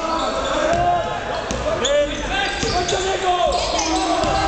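A basketball being dribbled on a hardwood gym floor during a game, with short high squeaks and voices echoing around the hall.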